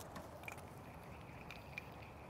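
Quiet open-air background with a faint steady high tone and a few light ticks.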